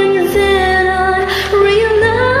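A woman singing long held notes over a karaoke backing track.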